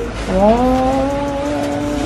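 A person's voice holding one long "oh" for nearly two seconds, sliding up in pitch at the start and then held steady.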